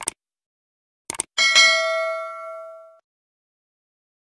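Subscribe-button sound effect: a short click at the start and a quick double click about a second in, then a bright notification-bell ding that rings for about a second and a half and fades away.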